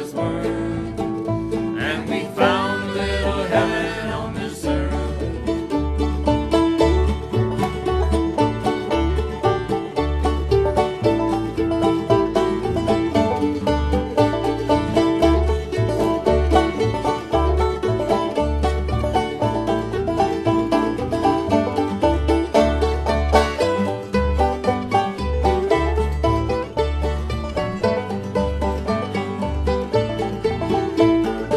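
Old-time string band playing an instrumental break: fiddles and banjo lead over mandolin and guitar, with an upright bass keeping a steady beat.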